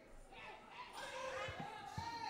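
Faint, indistinct speech with two dull, low thumps in the second half, about half a second apart.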